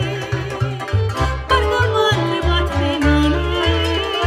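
Romanian lăutărească music played live by an all-acoustic taraf of accordion, violin, cimbalom and double bass, with a woman singing over it. The double bass keeps a steady rhythm of short notes under the melody.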